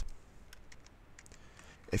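A few faint clicks from a computer keyboard, with a sharper click right at the start.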